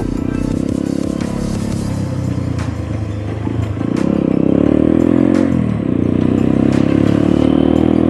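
Motorcycle engine running as the bike rides along. Its pitch dips and rises again a little after halfway, with background music underneath.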